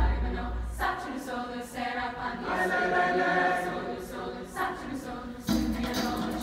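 Large mixed choir singing in full harmony. There are low thumps at the start and again about half a second before the end.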